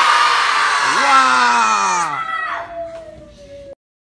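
A group of children shouting together in one long yell, loud for about two seconds and then fading. A single voice trails on until the sound cuts off abruptly near the end.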